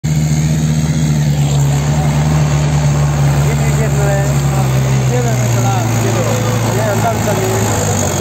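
Farm tractor's diesel engine running steadily as it pulls a sand-loaded trailer over rough dirt, its note easing down a little partway through.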